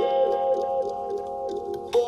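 Soft instrumental background music: a held chord with a quick, light pattern of repeated notes on top.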